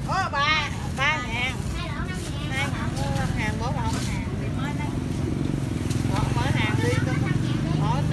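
An engine running steadily close by, growing louder from about halfway through, under people talking.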